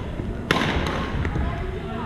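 A badminton racket striking the shuttlecock once, a sharp crack about half a second in that echoes through the large gym hall.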